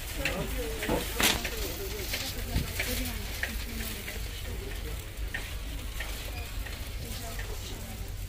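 Large warehouse store ambience: a steady hiss over a low hum, faint distant voices, and scattered light clicks and rattles from a metal shopping cart being pushed.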